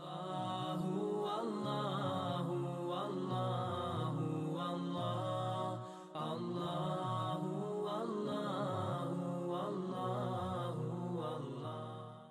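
Chanted vocal music, voices in a slow melodic line, with a short break about halfway through before it carries on, fading out at the end.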